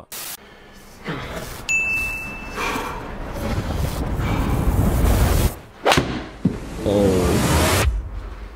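A golf 8 iron striking the ball hard into an indoor simulator's impact screen: one sharp crack about six seconds in, after a swelling rush of noise. A voice shouts right after the strike.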